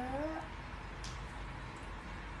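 A young child's voice holding a drawn-out vowel that rises in pitch and ends about half a second in, followed by quiet room tone with one faint click about a second in.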